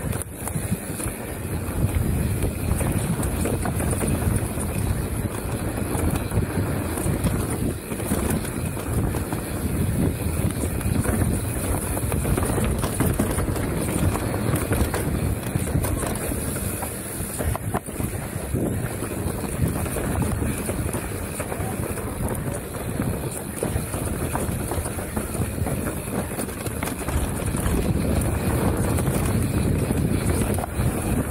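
Mountain bike descending a dirt trail at speed: steady wind noise buffeting the action camera's microphone over the rumble of knobby tyres on packed dirt, with small rattles and clicks from the bike over bumps.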